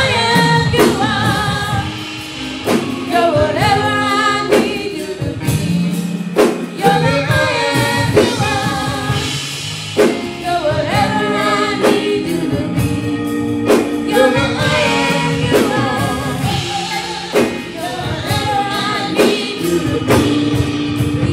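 Gospel worship song sung by a small group of singers on microphones, with held bass notes underneath and a sharp percussive hit about every two seconds.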